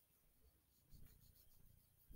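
Near silence, with faint soft rubbing from about a second in as a makeup applicator wand is worked over the skin on the back of a hand.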